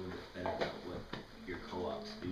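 Speech: a person talking in a small room.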